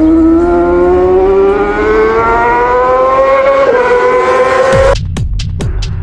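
Channel intro sound design: one pitched tone with many overtones rises slowly for about five seconds. About five seconds in it cuts off into a quick run of sharp electronic hits over low, falling thuds.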